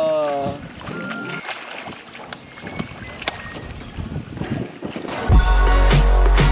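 A voice holding a sung note ends about half a second in, followed by light splashing and sloshing of pool water. Near the end, music with a heavy bass beat starts suddenly and is the loudest sound.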